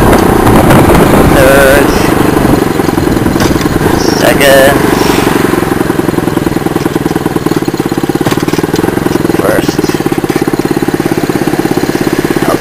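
Small single-cylinder four-stroke engine of a 48 cc semi-automatic mini chopper running under the rider. Its note eases down over the first half as the bike slows, then settles into a slower, steady running.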